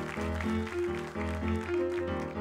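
Smooth jazz band playing, with keyboard chords over a bass line that pulses about twice a second.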